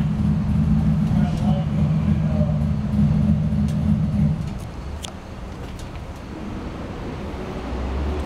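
A vehicle engine running steadily with a low, even sound that drops away about four seconds in, leaving a quieter rumble.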